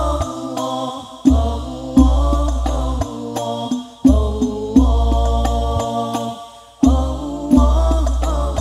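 Al-Banjari ensemble performing: male voices chanting a devotional song in unison over rebana (terbang) frame drums struck by hand. Deep drum booms come in pairs, a pair about every three seconds, with sharper slaps between them.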